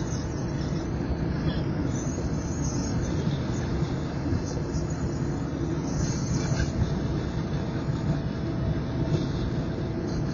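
Steady road and engine noise of a car cruising at highway speed, heard from inside the cabin as an even low rumble.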